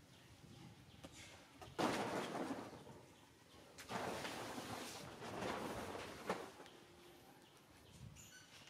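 Outdoor ambience with faint birds, broken by two long bursts of noise, the first about two seconds in and the second running from about four to six and a half seconds, with a sharp click near its end.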